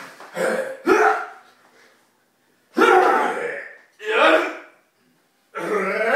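Two men grunting and straining as they push against each other head to head, in about five short bursts of wordless voice with brief silences between.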